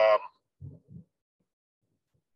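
A man's drawn-out hesitation 'um' trailing off over a video-call line, followed by two faint low murmurs and then dead silence, the line gated to nothing while he pauses.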